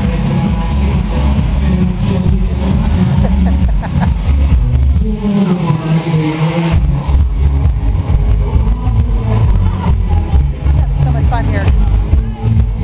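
Electro dance track played loud through PA speakers, with a heavy repeating bass beat and a man singing live into a microphone over it. About five seconds in, the bass drops out for a couple of seconds under a gliding vocal line, then the beat comes back.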